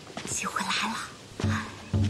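A woman whispers a short line, then background music comes in with low held notes about one and a half seconds in.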